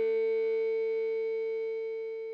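Last distorted electric guitar note of a punk rock song ringing out on one steady pitch and slowly fading away after the final drum hits.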